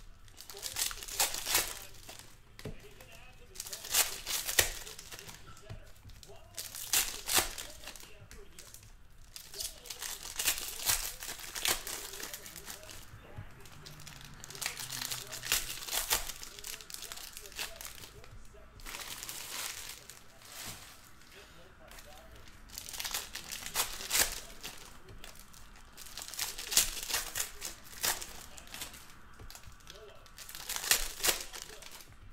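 Foil wrappers of trading-card packs crinkling and tearing as they are opened by hand, in repeated bursts with quieter stretches between.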